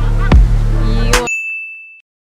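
Background music with a steady bass and a beat that stops abruptly about a second in, followed by a single high, steady ding that rings on alone: an edited-in chime sound effect.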